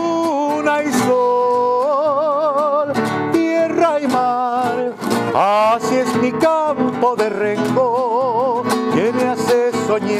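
A man singing a Chilean tonada with a wavering vibrato on held notes, accompanying himself on a strummed nylon-string classical guitar.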